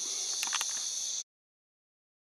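Crickets chirping in a steady high-pitched chorus, with a couple of faint clicks about half a second in. The sound cuts off abruptly a little over a second in, leaving dead silence.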